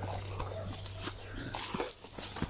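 Footsteps and brushing through tall grass and undergrowth, with a few short, faint pitched calls in the background.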